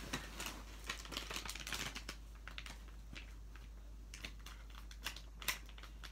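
Foil blind-bag toy packaging crinkling and crackling as it is handled, in many small irregular clicks, with a sharper click near the end.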